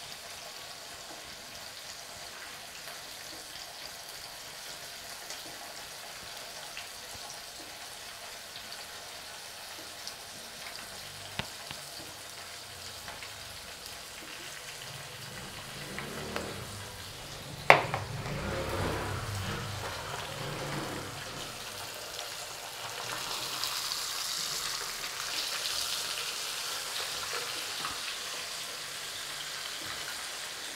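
A metal spoon stirring sauce in a ceramic bowl over a steady faint hiss, with small clinks and one sharp clink of the spoon against the bowl a little past halfway.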